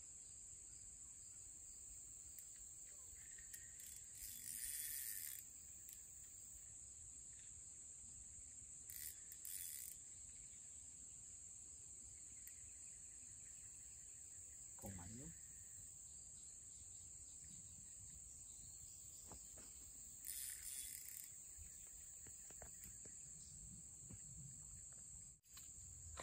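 Near silence with a faint, steady high-pitched insect drone throughout, broken by a few short soft noises.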